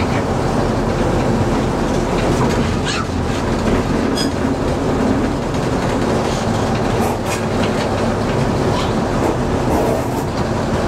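Small diesel shunting locomotive heard from inside its cab, running slowly along the line: a steady engine drone with occasional clicks of the wheels over the rail joints.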